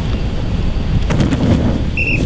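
Wind buffeting the microphone as a loud, steady low rumble, with a few faint knocks about a second in.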